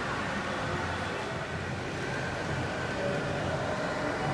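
Steady background rumble and hum, with a faint, indistinct murmur of voices.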